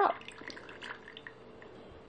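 Balsamic vinegar poured in a thin stream from a cruet's spout into a small glass of olive oil: faint drips and small splashes, a quick run of little ticks that thins out after about a second and a half.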